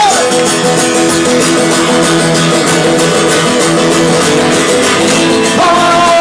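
Two amplified acoustic guitars strumming chords in a punk song's instrumental break. Singing comes back in near the end.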